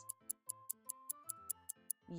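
Clock-ticking sound effect, about five ticks a second, over soft background music with a simple stepping melody. It is a thinking-time timer counting down the pause for a guess.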